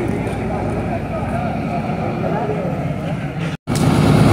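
Murmur of voices on a crowded station platform over the steady low drone of an idling diesel locomotive. Near the end the sound cuts out for a moment, then the locomotive's idle comes back louder and closer.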